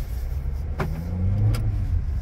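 A 2022 Volkswagen Jetta Comfortline's 1.5-litre turbocharged four-cylinder engine and road rumble heard from inside the cabin as the car is driven slowly. The engine note rises a little about a second in. Two brief clicks come less than a second apart.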